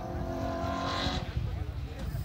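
Rally car engine heard in the distance, a steady high note that fades out about a second in, over a low buffeting rumble of wind on the microphone.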